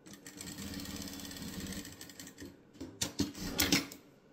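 Industrial straight-stitch sewing machine running a seam through cotton strip patchwork with rapid even stitching for about two and a half seconds, then stopping. A few loud sharp clicks follow near the end as the fabric is handled.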